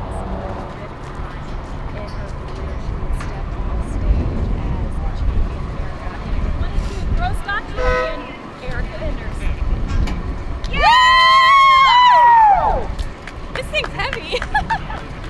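Low wind rumble with faint voices, then, about eleven seconds in, a loud, high, sustained celebratory scream lasting about two seconds, its pitch sliding down as it ends.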